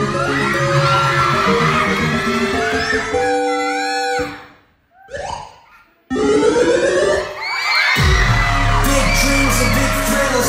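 Pop music track with singing; it drops out about four seconds in for a near-silent gap of about two seconds, then comes back, with heavy bass joining about two seconds later.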